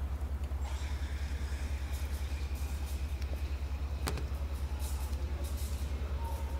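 A steady, low, pulsing drone, with one sharp click about four seconds in.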